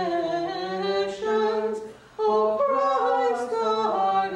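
Unaccompanied hymn singing in an Orthodox church service: long held notes that slide from pitch to pitch, with a short pause about halfway through before the singing resumes louder.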